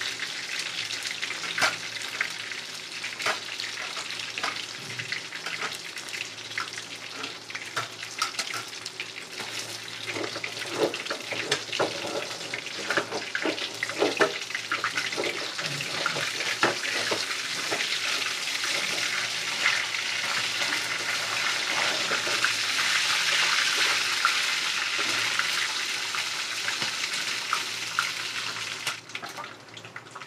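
Whole tilapia frying in hot oil in a wok: a steady sizzle with crackling spatter and occasional clicks and scrapes of a metal spatula against the pan. The sizzle swells past the middle and drops off near the end.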